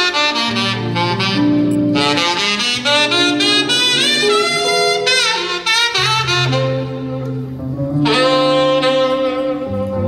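Tenor saxophone playing a slow gospel melody, with slides between notes, over sustained low band accompaniment.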